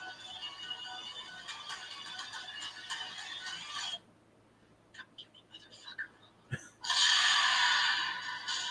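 Horror-film trailer soundtrack played back: a tense musical score for about four seconds, then a sudden cut to near silence with a few faint clicks, a low thud about six and a half seconds in, and a sudden loud swell of music near the end, the loudest part.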